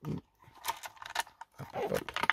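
Clicks and knocks of hard plastic as the spur-gear cover of an RC monster truck is worked loose from the chassis by hand. A brief strained vocal sound of effort comes near the end.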